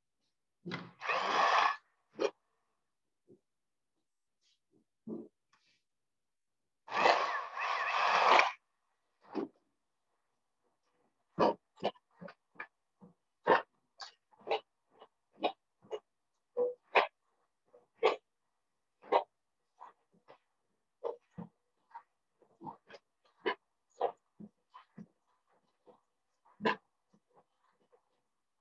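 Hand-held immersion blender run in two short bursts of about a second each, pureeing a thick barbecue sauce. These are followed by many scattered light knocks and taps, heard through video-call audio that drops to silence between sounds.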